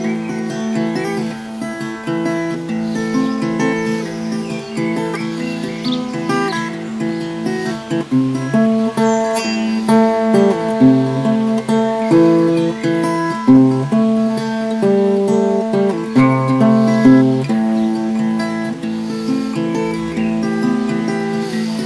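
Ashbury four-string acoustic tenor guitar played solo, an improvised instrumental of changing notes and chords, a little louder in the second half.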